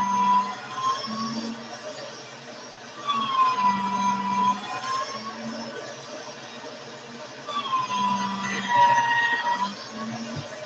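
A siren wailing, its pitch sliding down and back up in slow cycles about every four and a half seconds.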